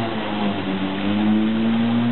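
Corded electric walk-behind lawn mower running while cutting grass: a steady motor hum whose pitch dips slightly and climbs back about halfway through.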